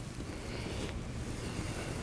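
Steady background noise of a shop space, with a dry-erase marker faintly scratching across a whiteboard during the first second.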